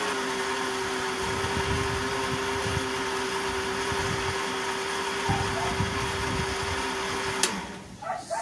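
Electric countertop blender running steadily with a constant hum, puréeing banana with the other ingredients until the banana is fully dissolved. It switches off with a click near the end.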